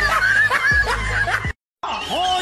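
A snickering, chuckling laugh over a low rumble, cutting off abruptly about one and a half seconds in.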